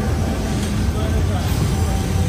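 City street noise: a steady, loud low rumble of traffic and wind on the microphone, with faint voices of passers-by in the background.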